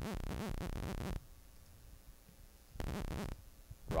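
Serum software synthesizer playing a sawtooth note that an LFO chops into a fast, even, tempo-synced rhythm. It plays for about a second, stops, comes back briefly about three seconds in, and starts again at the very end.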